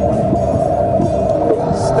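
A surround music mix played back over speakers, folded down from 5.1 to mono, with a long held note.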